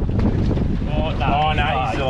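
Wind buffeting the microphone as a low, steady rumble, with a man's voice starting about a second in.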